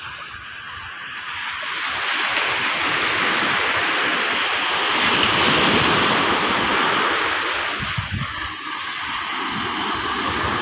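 Seawater rushing as a wave washes in at the shoreline, a rising wash of surf noise that swells from about two seconds in and eases off near the end.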